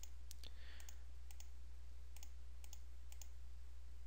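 Computer mouse buttons clicking, several short sharp clicks, some in quick pairs, over a steady low electrical hum.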